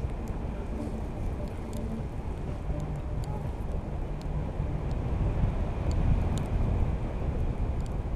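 Wind rushing over the camera's microphone in paraglider flight, a steady low rumble that swells a little past the middle, with a few faint clicks.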